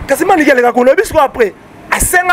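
A man speaking, with a short pause about one and a half seconds in.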